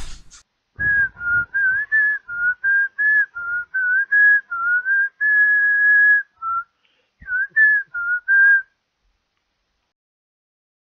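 A person whistling a short tune, a string of brief notes stepping up and down with one long held note about five seconds in; the whistling stops a little before the end.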